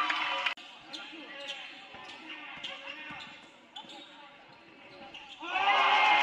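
Basketball game sounds in a gym: a ball bouncing on the hardwood floor, with scattered knocks and faint voices. Sneakers squeak loudly on the court at the start and again near the end, and the sound drops suddenly about half a second in.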